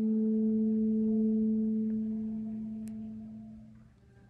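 Solo alto saxophone holding one long low note that slowly fades away over the last couple of seconds.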